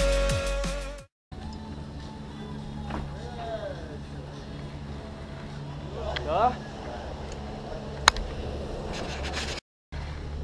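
Background music with a beat for about the first second. After a brief cut, the steady low hum of a gondola lift's station machinery, with a few short high squeals and a single sharp click about eight seconds in.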